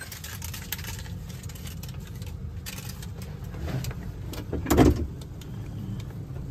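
Vehicle engine and road noise heard from inside the cab while driving: a steady low rumble, with a brief loud thump about five seconds in.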